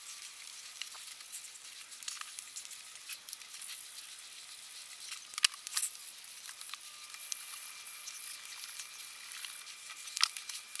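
Felt-tip markers scribbling on a colouring-book page: a faint, steady scratchy hiss with small taps of the tips on the paper, two sharper taps about halfway through.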